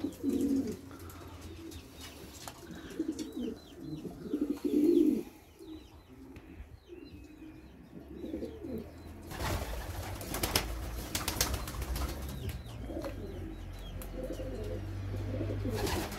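Domestic pigeons cooing in their loft, loudest about five seconds in. In the second half there are a few brief noisy strokes, and a low rumble builds toward the end.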